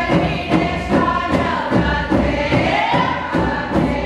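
A group of women singing a chant in unison over a steady drumbeat, about two beats a second.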